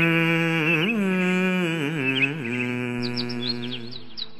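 A devotional song: a singer holds one long note, probably the end of the word 'satyam', bending it through ornamented turns and letting it fall in pitch and fade about three seconds in. Short high bird chirps are mixed into the recording near the end.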